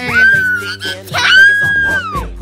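A young boy shrieking twice, two long high-pitched screams, as the Pie Face game's hand hits him in the face with whipped cream, over background music with a steady beat.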